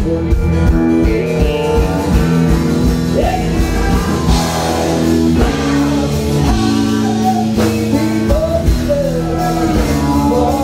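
Live country music: a man singing into a microphone over his own strummed acoustic guitar, with other instruments filling out the low end.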